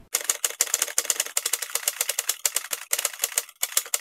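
A typewriter sound effect: a quick, uneven run of key strikes, about ten clicks a second, accompanying text being typed out on screen.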